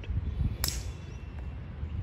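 A single sharp click about half a second in: a golf club striking the ball on a tee shot, heard from some distance, over low outdoor background noise.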